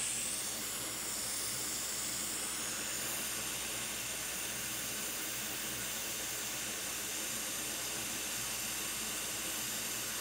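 Hot air rework station blowing a steady hiss onto a MacBook logic board while a replacement U7000 chip is soldered down in flux.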